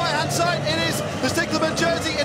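A man's voice talking fast and continuously, sports commentary over a race finish, with music faintly beneath.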